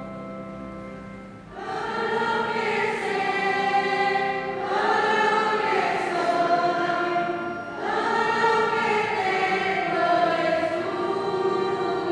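Children's choir singing a hymn with keyboard accompaniment. A held instrumental chord sounds first, then the voices come in about one and a half seconds in and sing in phrases with short breaths between them.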